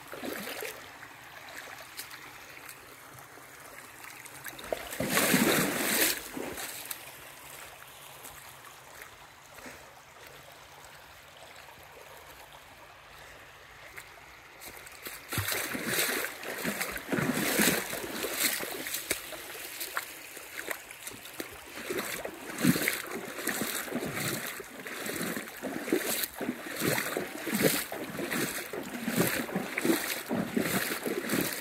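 Shallow creek water splashing, with one loud burst of splashing about five seconds in. From about halfway on there is a run of repeated splashes, one or two a second, as of footsteps wading through the water.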